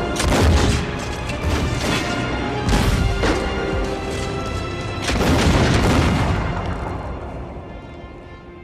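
Movie battle soundtrack: a series of heavy booming blasts and musket gunfire over orchestral music. The biggest blasts come about three seconds in and again a little after five seconds, and then the sound fades away.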